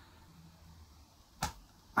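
A quiet pause between sentences of a man's talk, holding low room tone, broken about one and a half seconds in by one brief sharp sound.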